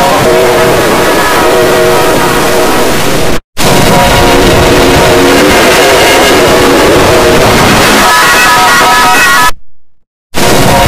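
Very loud, heavily distorted and pitch-shifted electronic jingle of a 'G Major' effect edit: sustained, clipped chord tones. It drops out for a split second about three and a half seconds in and cuts off again near the end.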